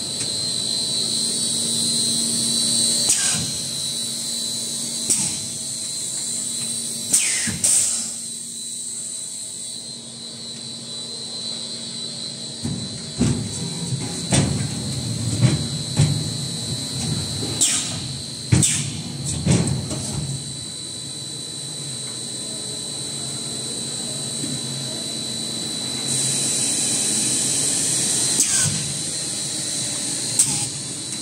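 Plastic bottle blow molding machine running under test: a steady hum with a constant high whine, broken by a run of sharp clacks and short hisses around the middle, and a longer hiss near the end.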